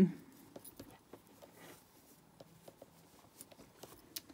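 Faint rustling and small scattered ticks of hands handling stretchy t-shirt fabric and pinning it with dressmaker's pins.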